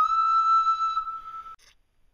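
A flute-like wind instrument holding one long high note, which stops about one and a half seconds in.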